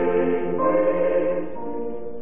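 Mixed choir singing a waltz in sustained chords, the harmony shifting about half a second in and again near the end, where it gets slightly quieter.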